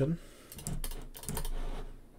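Computer keyboard typing: a quick run of keystroke clicks between about half a second and a second and a half in, entering new numbers into a value field.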